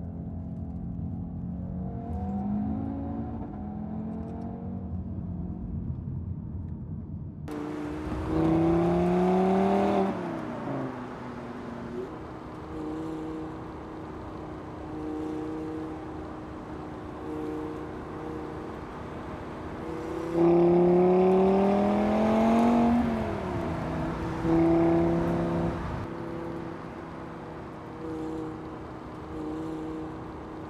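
Audi TT RS Roadster's turbocharged five-cylinder engine driving along. Its pitch climbs hard under acceleration twice, each time falling sharply at an upshift, between stretches of steady cruising. The first few seconds are duller and more muffled.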